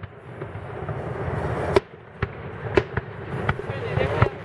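Aerial firework shells bursting in a series of sharp bangs: the loudest about halfway through, then several more in quick succession, over a steady noisy background.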